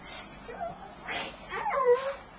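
A small child's voice from under a blanket: a short breathy burst about a second in, then a brief high whine that falls in pitch near the end.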